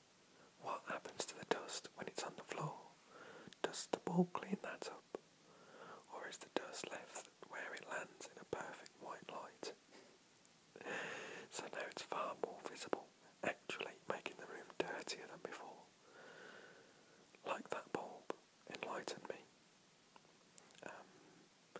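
Whispered speech: one voice reading aloud in a whisper, with short pauses.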